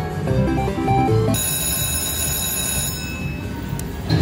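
Slot machine electronic sounds: a quick run of stepped tones as the reels land, then a bright, steady electronic ringing for about two seconds. This is the alert that the Prosperity free-games feature has triggered.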